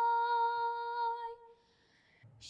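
A lone female voice, unaccompanied, holding one long sung note at the end of a phrase; it fades out about a second and a half in, leaving near silence.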